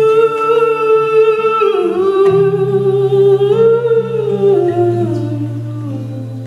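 Male singer holding a long sustained sung note into the microphone, live blues, with acoustic guitar underneath. The note bends down about two seconds in, climbs back a second or so later, and falls again near the end.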